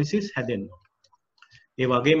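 A man speaking, broken by a pause of about a second in the middle, with a few faint clicks in the pause.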